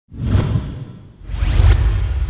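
Two whoosh sound effects of an animated logo intro, the first just after the start and the second, rising, about a second later, over a low rumble that carries on.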